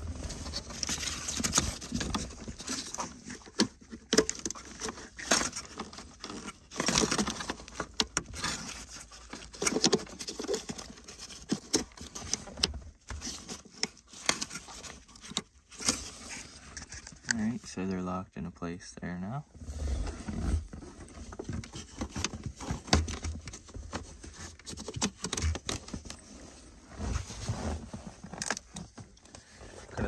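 Hands working a wiring harness and plastic connectors under a car's dashboard: rustling and scraping with scattered sharp clicks as the yellow airbag-controller plugs are pushed in and latched.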